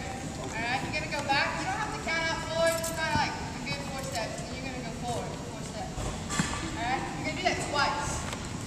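Voices talking on a gym floor, with a few short knocks near the end.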